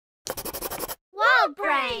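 Pencil scratching quickly across paper, a short burst of rapid strokes lasting under a second. It is followed by a cartoon character's high voice exclaiming twice, with pitch sliding up and down.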